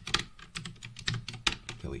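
Computer keyboard being typed on: a quick run of irregular key clicks as code is deleted and retyped.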